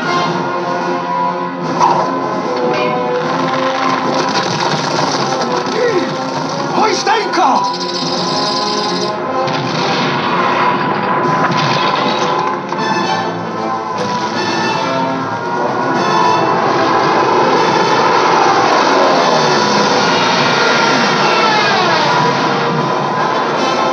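Animated-film trailer soundtrack: continuous music with a few sliding pitch sweeps, played from a VHS tape through a TV's speaker.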